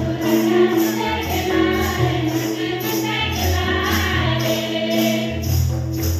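A group of women singing together into microphones over amplified music with a steady bass line and a bright shaken percussion beat about twice a second.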